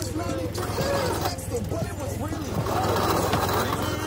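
Several people talking over one another, over a steady low hum.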